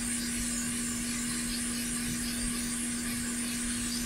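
Hot air rework station blowing a steady hiss of air onto a circuit board, heating the solder to lift a smart card holder off. A steady low hum runs underneath.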